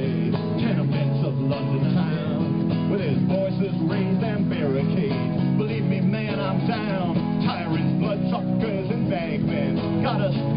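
Acoustic guitar strummed live in a steady instrumental passage of a folk-rock protest song, with voices of the surrounding crowd mixed in.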